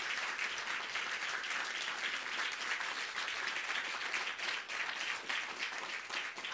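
Audience applauding steadily, many hands clapping together.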